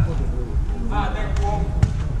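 A football being kicked, two sharp thuds (one right at the start, one just before the end), with players shouting across the pitch between them.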